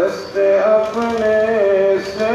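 A man's voice chanting a slow melody in long held notes, with a short breath pause near the start.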